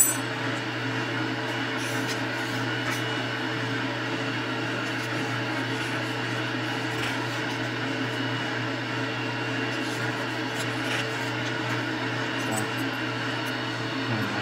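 Steady mechanical hum of a running machine, with a low drone and a faint steady higher tone under it; one sharp click right at the start.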